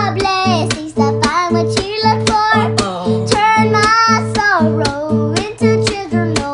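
A young girl singing long, sliding notes without clear words, over a strummed acoustic guitar keeping a steady rhythm.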